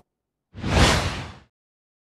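A single whoosh sound effect marking the change between news stories. It is a rush of noise that swells up about half a second in and fades away within a second.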